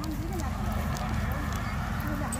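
Indistinct chatter of a group of people, no words made out, over a steady low rumble.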